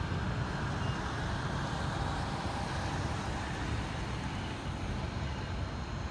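Steady road traffic noise: an even low rumble with a hiss, with no single event standing out.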